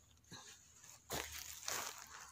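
Hands scraping and rustling dry conifer needles and loose soil on the forest floor, with two louder scrapes in the second half.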